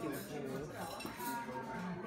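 Cutlery and plates clinking at a dinner table over a steady murmur of diners' chatter.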